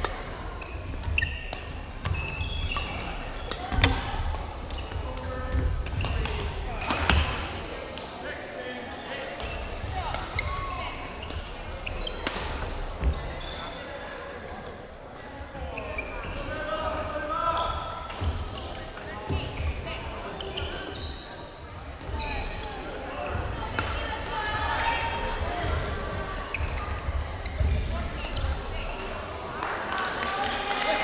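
Badminton play echoing in a gymnasium: many sharp racket strikes and footfalls on the hardwood court, with voices in the background.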